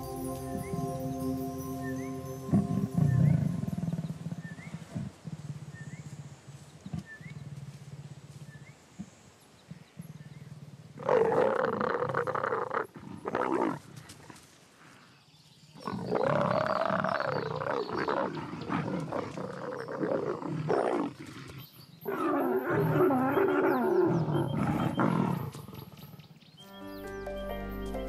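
Leopards calling loudly during mating: three long, rough bouts of calls that rise and fall in pitch, in the second half.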